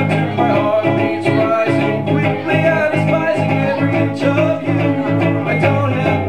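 Live guitar music: an instrumental passage played with a steady, evenly pulsing rhythm of picked notes.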